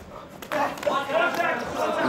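A man's voice talking, after a short lull of about half a second.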